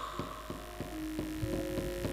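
Soft, low gamelan notes ringing and held, with a second note coming in about a second in, and faint irregular clicks behind them.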